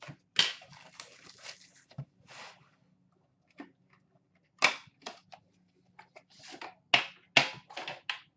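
A cardboard box being torn and pulled off a metal Upper Deck Premier tin: rustling and scraping with several sharp knocks, the loudest near the end as the metal tin is set down on a glass counter.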